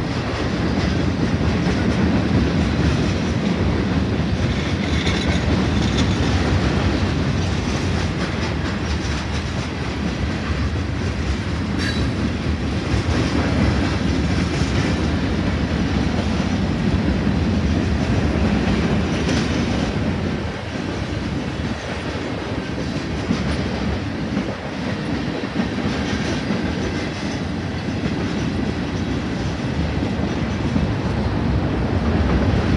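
Freight cars of a manifest train rolling steadily past, their steel wheels rumbling and clacking along the rails.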